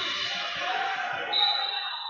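Wrestlers' bodies and shoes thudding and scuffling on a foam wrestling mat during a scramble, with background voices from coaches and spectators.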